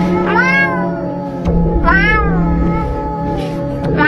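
A woman imitating a cat, meowing into an interviewer's microphone: two drawn-out meows that rise and then fall in pitch, about a second and a half apart, with a third starting at the very end, over steady background music.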